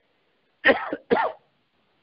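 A man clearing his throat: two short voiced bursts, a little after half a second in and again about half a second later.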